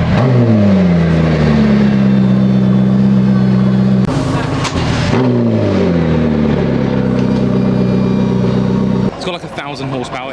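A supercar engine blipped twice, about five seconds apart. Each time the revs fall back and settle to a steady fast idle, which stops shortly before the end.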